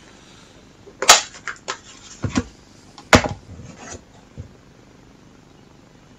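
A small harmonica case being handled and opened and the harmonica taken out: several sharp clicks and knocks, the loudest about one and three seconds in.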